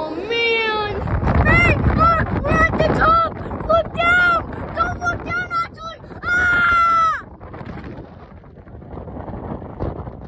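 A high voice sings a run of short notes, ending in one longer held note about six seconds in. After that, wind buffets the microphone.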